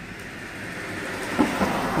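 A taxi driving past close by on the road at night, its tyre and engine noise swelling steadily as it approaches and loudest near the end.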